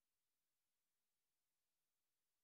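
Near silence: a digitally silent stream with only a very faint steady hiss.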